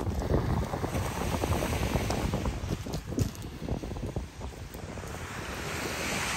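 Wind buffeting the microphone, with surf washing on the beach behind it.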